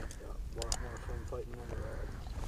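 A man's voice talking faintly at a distance, over a low wind rumble on the microphone. A couple of small clicks come about two-thirds of a second in.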